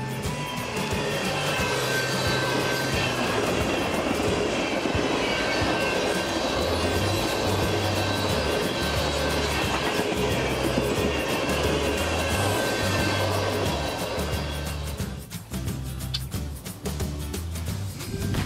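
A long freight train of tank cars rolling past, with steady wheel-on-rail noise that drops away about three seconds before the end. Background music with a bass line plays over it throughout.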